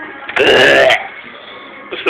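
Background music, broken by a loud, wordless vocal burst close to the microphone lasting about half a second, falling in pitch, and a second short burst near the end.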